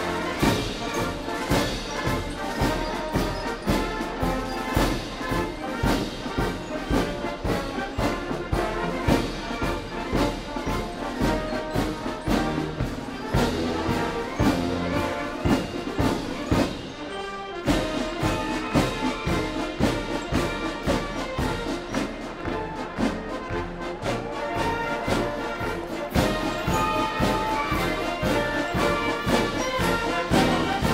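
A military brass band plays a march-style tune with a steady, even beat. There is a short break about 17 seconds in before the band carries on.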